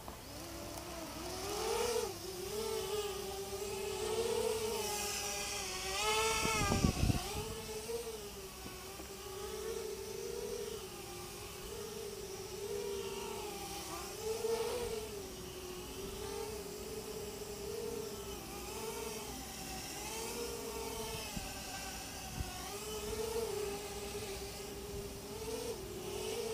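Small FPV quadcopter's motors and propellers whining in flight, the pitch rising and falling constantly with throttle and stick corrections as the pilot overcompensates on the controls. A brief thump about six or seven seconds in.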